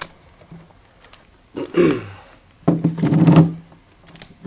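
A cardboard product box being handled and opened, with a sharp click at the start and light rustling, while a man makes two brief wordless voice sounds in the middle.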